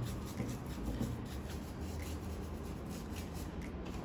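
Stiff bristle brush scrubbing and dabbing watery black paint into the rough, textured surface of a polyester figurine: a quick run of soft scratchy strokes.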